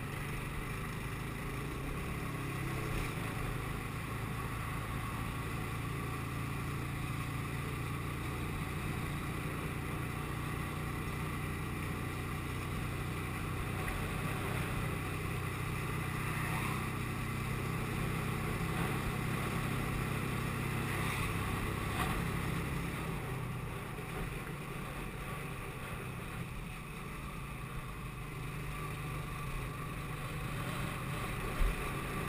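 TVS Apache RTR 180 motorcycle's single-cylinder four-stroke engine running steadily at road speed, heard from the moving bike with wind rushing over the camera microphone.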